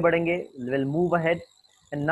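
A man's voice making drawn-out, held vocal sounds rather than clear words, in a stretch that stops about a second and a half in. A faint steady high whine sits underneath.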